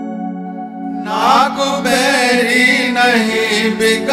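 Sikh shabad kirtan opening: a harmonium holds steady drone notes, then about a second in a male voice enters over it with a wordless, wavering melismatic alaap.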